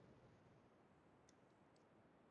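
Near silence: room tone, with a couple of faint clicks a little past halfway.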